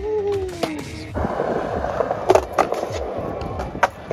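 Skateboard wheels rolling on skatepark concrete with a steady rumble, and sharp clacks from the board twice about two and a half seconds in and once more near the end.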